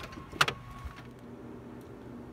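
A single sharp click or knock about half a second in, then faint steady background noise.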